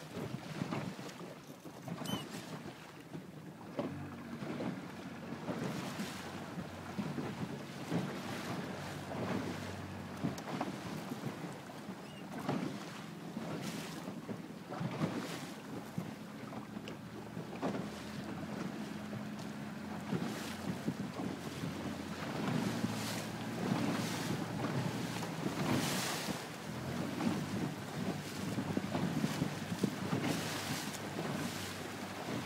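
Wind buffeting the microphone in frequent gusts and water splashing past the hull, over the steady hum of the inflatable chase boat's outboard motor.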